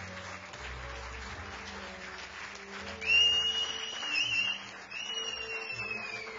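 Audience applauding, with two long whistles: the first, about halfway through, rises and wavers and is the loudest sound; the second, near the end, slowly falls away.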